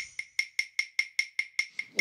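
Rhythmic percussive ticking, about five even, sharp clicks a second over a faint high ringing tone, like a wood-block beat opening a music track.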